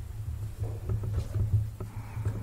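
A low, uneven rumble with a few faint taps as hands handle the control panel of a propane wall heater.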